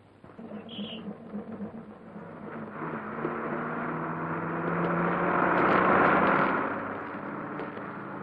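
Bus engine running as the bus drives past, growing louder to a peak about six seconds in and then fading.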